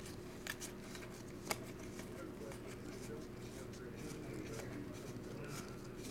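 Trading cards being slid over one another by hand as a stack is flipped through, giving a few faint ticks and clicks of card edges, the sharpest about a second and a half in. A faint, steady low hum runs underneath.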